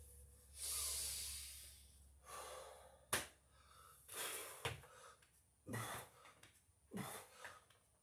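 A man breathing hard during Navy SEAL burpees, each breath a loud puff coming about every second or so, with a couple of sharp knocks as his hands and feet land on the floor mat.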